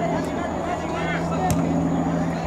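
A soccer ball kicked once, a single sharp thud about one and a half seconds in, over a steady low hum and distant shouting voices.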